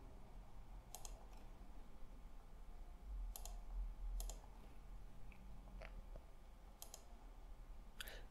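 A few faint, scattered computer mouse clicks, some in quick pairs, spread over several seconds.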